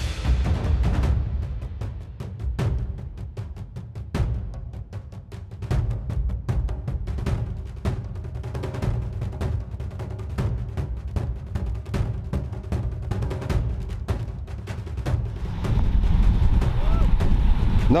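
Background music with a driving drum and percussion beat over heavy bass.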